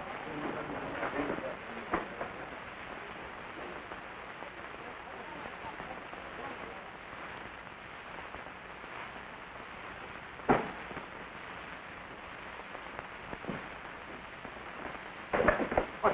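Steady hiss of a worn old film soundtrack, with faint voices murmuring in the first second or so. A single sharp knock comes about ten and a half seconds in, and a man's voice starts near the end.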